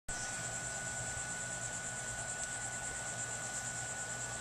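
Steady high-pitched chorus of insects trilling continuously, with a steady lower tone running under it.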